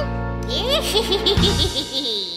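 Final chord of a children's cartoon song, held and then stopping about three-quarters of the way in, with cartoon characters giggling and laughing over it.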